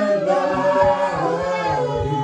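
A group of voices singing a worship song together, several pitches at once, with no clear instrument.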